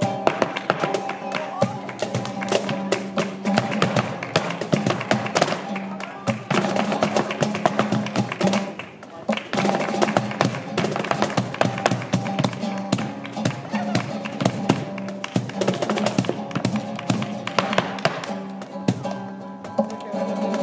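Live flamenco: a dancer's rapid heel-and-toe footwork (zapateado) rattling on a portable dance board, over a flamenco guitar, cajón and handclaps (palmas). The stamps come in dense runs, with short lulls about six and nine seconds in.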